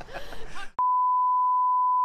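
Test-pattern reference tone: a single steady pure beep near 1 kHz that starts abruptly with a click just under a second in, after a moment of voices and laughter.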